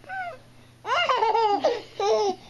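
A baby laughing: a short high-pitched squeal at the start, then about a second in a run of loud, high-pitched giggles.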